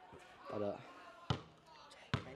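A basketball bounced once on a concrete patio about a second in: a single sharp thud.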